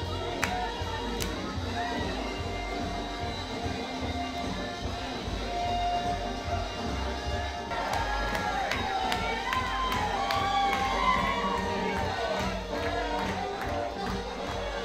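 A soul record playing loud over a club sound system, with the crowd cheering and whooping, the shouts growing much livelier about halfway through.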